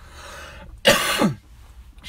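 A man clears his throat once, about a second in.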